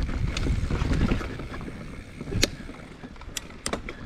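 Mountain bike descending a dry dirt trail: tyres rumbling over the ground with wind on the microphone, and a few sharp clicks and rattles from the bike, the loudest about two and a half seconds in.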